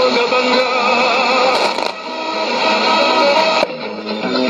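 Station music from a shortwave broadcast heard through a Sony ICF-2001D receiver's speaker, with steady held tones. About 3.6 s in, it cuts out for a moment, as the receiver is switched back from 15550 kHz to 11640 kHz.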